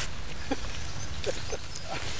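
Steady low wind rumble on the microphone, with a few short, faint vocal sounds scattered through it.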